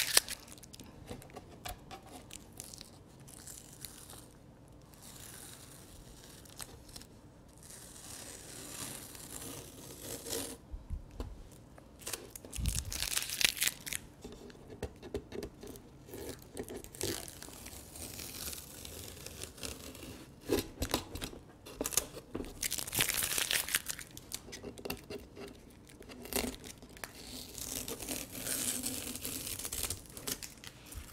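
Masking tape being peeled off the edges of a watercolor paper, in a series of ripping pulls with quieter gaps between, and a dull thump about halfway through.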